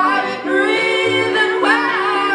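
Live indie-pop band playing: a female lead voice sings long, bending notes over electric guitar, bass and keyboard.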